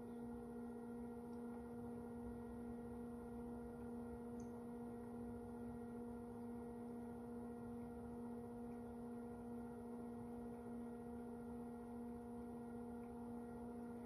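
Electric potter's wheel running at a steady speed: a faint, steady hum.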